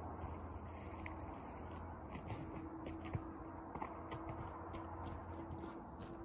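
Faint, irregular footsteps on a dirt trail over a steady low outdoor hum, with one slightly sharper tick about three seconds in.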